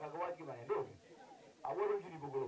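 Speech: a man's voice talking in short, emphatic phrases, loudest just before the end.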